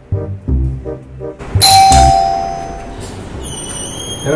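Background music with a plucked bass line, then, about a second and a half in, a doorbell chime rings out loudly and fades away. Near the end, a warbling high-pitched tone comes in.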